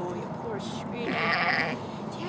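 A sheep bleats once, a short, quavering, high-pitched call about a second in.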